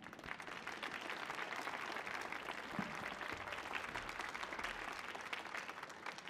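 Audience applauding, many hands clapping steadily and dying away near the end.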